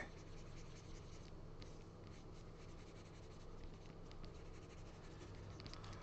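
Faint scratching and light ticks of a stylus nib on a pen display's surface as strokes are drawn, over a low steady hum.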